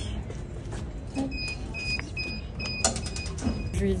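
An electronic beeper at an entrance gate sounding about six short high beeps, a little over two a second, as someone pushes through the gate. A sharp metallic click comes near the end of the beeps, over a low rumble.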